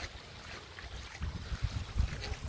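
Shallow hillside runoff water trickling over a concrete sidewalk, with a low rumble underneath.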